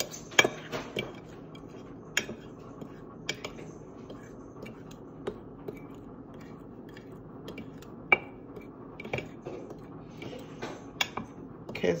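A kitchen utensil stirring flour in a glass baking dish, with sharp irregular clicks every second or two where it knocks against the glass.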